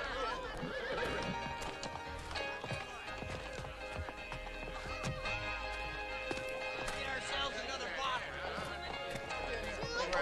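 Horse hooves clip-clopping and a horse whinnying, with sustained film-score music.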